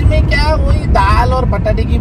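Car cabin road and engine noise: a steady low rumble under voices talking inside the moving car.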